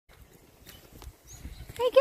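Footsteps on dry leaf litter and mulch, faint and irregular, with a few soft knocks.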